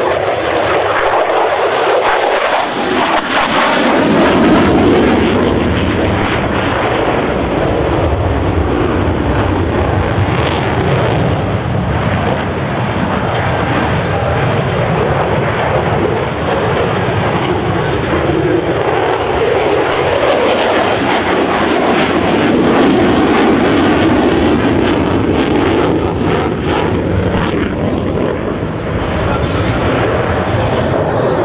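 Jet noise from a USAF F-16 Fighting Falcon in display flight: a loud, continuous rushing roar of its engine that swells twice, about four seconds in and again after about twenty seconds, as the jet manoeuvres.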